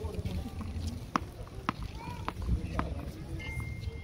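Frontón handball ball being played: a small hard ball is slapped by hand and smacks off the concrete wall and floor. There are four sharp knocks, about half a second apart, each ringing briefly off the walls. A thin steady tone comes in near the end.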